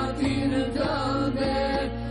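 An ilahi, an Islamic devotional song, sung by male and female voices over a steady low drone.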